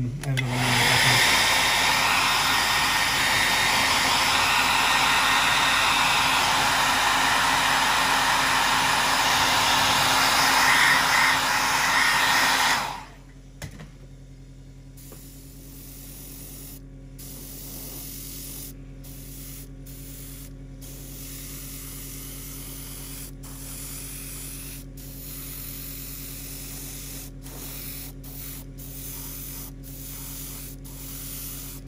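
Hair dryer blowing on freshly airbrushed acrylic paint to dry the coat, running steadily for about thirteen seconds and then switched off. After it stops, a quieter steady hum from the airbrush compressor remains, with a few faint clicks.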